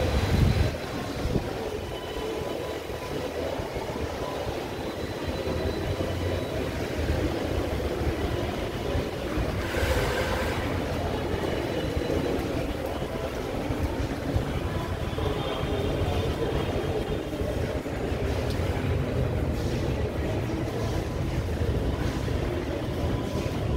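Underground metro station ambience picked up while walking through a corridor: a steady low rumble and hum, with a faint thin whine above it and a brief hiss about ten seconds in.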